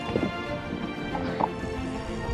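Background music with sustained notes, and two short gliding sounds over it, one near the start and one about a second and a half in.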